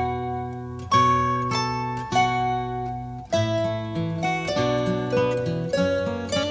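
Instrumental opening of a Celtic folk song played on plucked strings. Ringing chords come about once a second, then a quicker run of lower notes starts about three seconds in.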